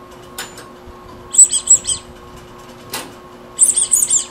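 Rubber duck squeeze toy squeaking in two quick bursts of high squeaks, the second near the end, with a couple of sharp clicks between them.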